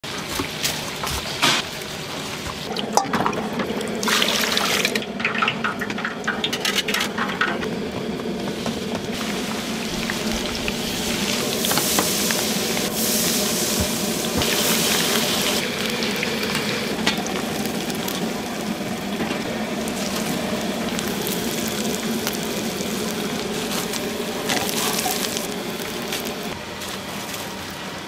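Hot oil in a deep fryer sizzling and bubbling steadily as battered gimmari fry, with a few sharp knocks.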